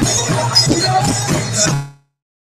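Music with a steady low drone and regular percussion strikes, about four a second, that cuts off suddenly to silence near the end.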